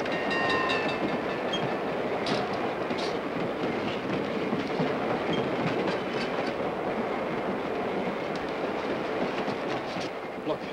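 Passenger train running at speed, heard from its open rear platform: a steady rumble of wheels on rails with scattered clicks of rail joints and a brief high squeal about half a second in.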